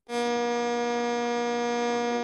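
A loud, steady electronic buzz, one unchanging pitch with many overtones, starting abruptly about a tenth of a second in after dead silence.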